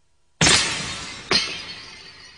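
Two loud, noisy, cymbal-like percussion strikes in a pop song's instrumental intro, about a second apart, each ringing down over roughly a second. They come in sharply after a brief near-silence.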